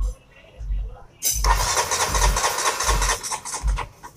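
The KTM RC 200's single-cylinder engine is cranked by its electric starter for about two and a half seconds, starting a little over a second in, and it does not fire. It cranks without starting because the fuel pump is delivering no petrol.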